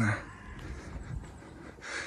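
Quiet outdoor background with a faint, uneven low rumble; near the end, a man takes a quick breath in.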